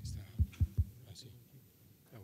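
Microphone handling noise: three dull, deep thumps in quick succession as a table microphone is picked up and passed, over faint murmuring voices.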